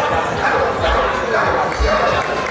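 A dog barking and yipping among voices, over music with a deep bass beat thumping about once a second.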